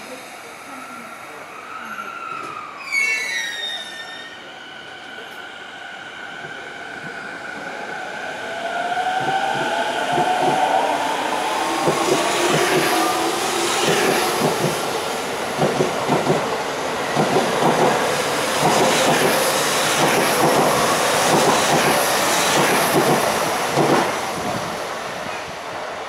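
Toei 10-300 series electric train pulling out of the station: a brief falling squeal about three seconds in, then the motor whine rising in pitch as it speeds up. Then a fast rhythmic clatter of wheels over rail joints as the cars pass close by, easing off near the end.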